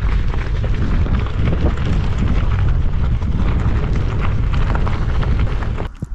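Heavy wind buffeting the camera microphone of a moving bicycle, a steady loud rumble. Through it comes the gritty crackle of the tyres rolling on a loose gravel road. It cuts off just before the end.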